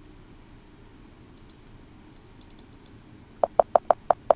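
Computer keyboard typing: after a few faint clicks, four quick, loud keystrokes come near the end, typing out the start of a word.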